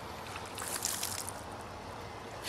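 Faint water sloshing in a plastic bucket as a child sits in it, a soft swish swelling about half a second in and fading by just past a second.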